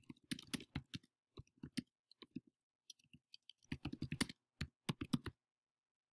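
Typing on a computer keyboard: quick, uneven runs of key clicks with short pauses between them.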